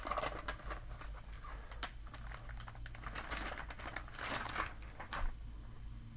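A booklet being slid out of a Mylar sleeve: the stiff plastic film crinkles and rustles in irregular bursts, with louder flurries about two seconds in and again between four and five seconds.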